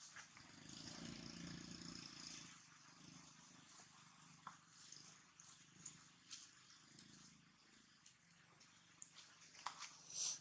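Faint, near-silent outdoor sound: a low, purr-like sound for about two seconds near the start and again more weakly later, with scattered light rustles and clicks in dry leaf litter as a macaque shifts and sits up.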